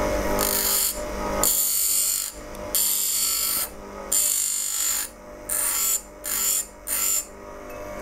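Bench grinder running while a steel skew chisel is pressed against its coarse grinding wheel in a series of passes, each a hiss of steel on stone. The passes get shorter and quicker near the end. The edge is being ground around the chisel's rounded-off corner into a new bevel.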